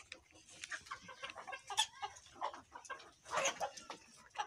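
A flock of Egyptian Fayoumi chickens clucking, with many short calls overlapping and the loudest near the middle and about three and a half seconds in. This is the 'kor kor' calling the keeper describes as a sign that the hens are ready to start laying.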